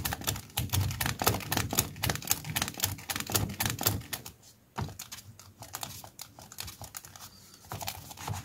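A grey kneaded eraser scrubbed rapidly back and forth over a pencil sketch on sketchbook paper, lightening the drawing. The fast rubbing strokes are dense and strong at first, turn softer and sparser about halfway through, and pick up again near the end.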